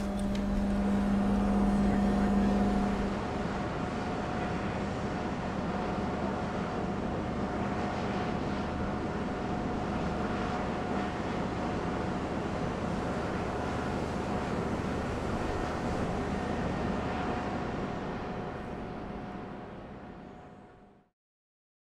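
Steady drone of an icebreaker's deck machinery, with a constant whine running through it and a lower hum that stops about three seconds in. It fades out near the end.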